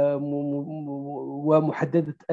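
A man's voice holding one long, level hesitation vowel for about a second and a half, then breaking back into a few quick words of speech near the end.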